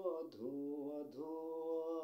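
A man singing a Bengali song unaccompanied, drawing out long held notes that glide to a new pitch about a second in.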